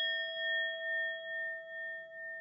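A struck bell, the notification-bell sound effect of a subscribe animation, ringing on after its strike. It is a clear, bell-like ring that slowly fades, its loudness pulsing in slow waves.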